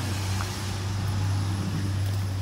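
A steady low hum of a running motor or engine, with faint voices in the background.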